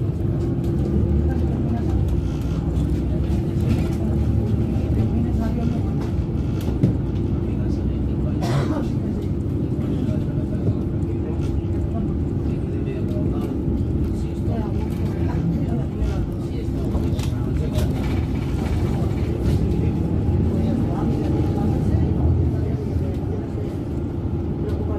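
A city bus in motion, heard from inside the passenger cabin: steady engine and road noise with a constant hum.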